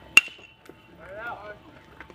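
A baseball bat strikes a pitched ball: one sharp metallic ping with a brief ring, right at the start. About a second later a voice calls out.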